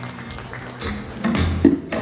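Electric guitar starting a song's intro on a live stage: a few scattered notes, then a low thump with a sharp hit about a second and a half in, just before the chords come in.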